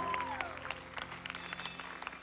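Scattered applause from a congregation, separate claps, over a soft held musical chord whose top note slides down and fades about half a second in.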